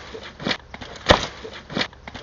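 A series of short, evenly spaced thumps, about three in two seconds, over a low background hiss.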